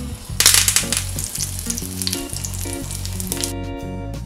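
Dry red chilies frying in hot oil in a pan: a sharp sizzle starts about half a second in, is loudest at first, and stops near the end.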